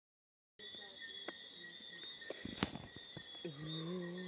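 Crickets trilling in a steady, unbroken high tone, with a few faint clicks. About three and a half seconds in, a person starts humming a low, held note.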